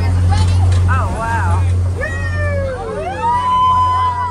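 Passengers whooping and cheering in rising and falling "woo" calls, several voices overlapping and one long held call near the end, as the amphibious duck tour vehicle rolls down the ramp into the river. Under them the vehicle's engine runs with a steady low drone.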